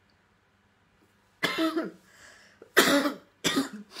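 A woman coughing, a run of about four short coughs starting about a second and a half in.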